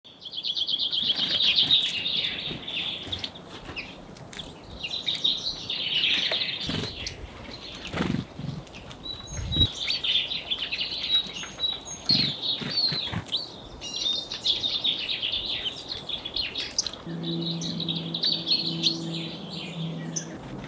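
Small songbirds chirping and twittering in a near-continuous chorus of high trills, with occasional wing flutters and short clicks as birds move about a feeding spot.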